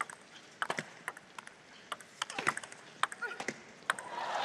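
Table tennis rally: a plastic ball clicking sharply off the rackets and the table in a quick, irregular run of hits.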